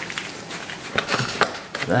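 A plastic jug of epoxy resin handled over a bucket, with a few light clicks and knocks, as a pour is topped off to weight; a man starts speaking near the end.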